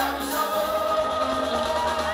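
Live gospel worship music: several voices singing together, holding long notes over a live band with bass and keyboards.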